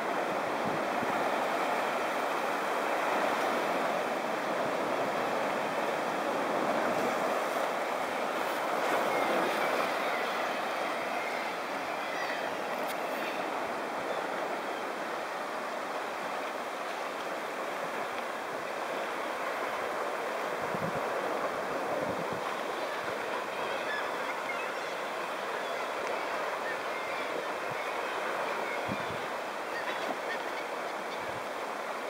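Sea swell surging and washing against a rocky cliff base: a steady rush of surf and moving water, a little louder about a third of the way in.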